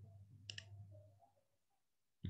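Faint single keystroke on a computer keyboard about half a second in, over a low hum that fades away after about a second.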